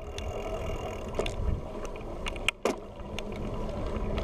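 Bicycle riding along a tarmac lane: steady rumble of tyres and wind on the bike-mounted action camera's microphone, with a few light clicks and a brief dip in the noise about two and a half seconds in.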